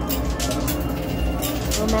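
Busy casino background of chatter and machine music, with light clinks of quarters dropping onto a coin pusher machine's playfield.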